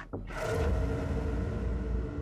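Background score sting: a sudden hit about a third of a second in, fading into a low rumbling drone with a few held tones.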